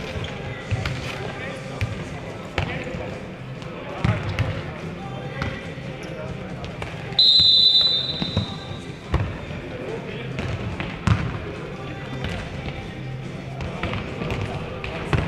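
A futnet ball being kicked and bouncing on an indoor court, with sharp knocks scattered through the rally and voices in the hall. A referee's whistle blows once, short and shrill, about seven seconds in, the loudest sound here.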